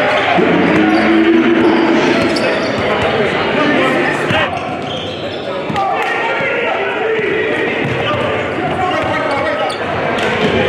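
Live gym sound of a basketball game: a ball dribbling on a hardwood court, with players' and spectators' voices in a large gymnasium.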